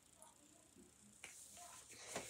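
Near silence: room tone, with a faint click a little over a second in.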